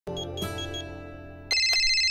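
A short musical chord that dies away, then, about one and a half seconds in, a mobile phone starts ringing with a loud, high, fluttering electronic ring.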